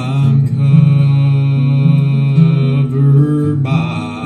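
A man singing a gospel song in long held notes over a strummed acoustic guitar, the sung note changing pitch near the end.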